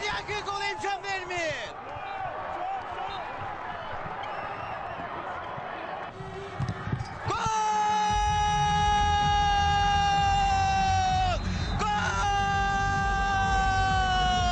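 A sports commentator's excited shouting, then arena crowd noise, then two long held yells of about four and three seconds, each dropping in pitch at the end, over a loud crowd roar celebrating a futsal goal.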